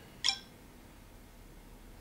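Samsung Galaxy Nexus camera app's shutter sound, played from the phone's speaker as a photo is taken: one short, sharp click about a quarter second in.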